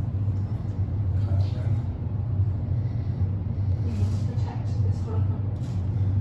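A steady low rumble with faint, indistinct voices over it.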